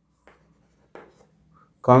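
Chalk writing on a chalkboard: a few short, faint scratches about a second apart as a word is written.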